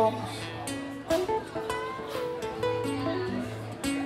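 Two acoustic guitars playing live, strummed chords and picked notes over a held low note.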